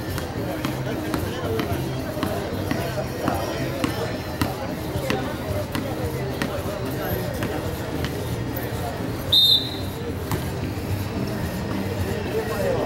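An ecuavoley ball thuds several times on the concrete court, bounced and struck, over steady crowd chatter and background music. Near the end a short, sharp whistle blast is the loudest sound.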